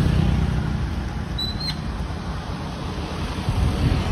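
Roadside traffic noise: a steady low rumble of motorbikes and cars on the street, with a brief high squeak about a second and a half in.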